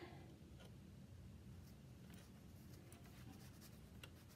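Faint rustling and small scratchy ticks of cotton cloth being handled as a thin bungee cord is threaded through the side channel of a sewn face mask.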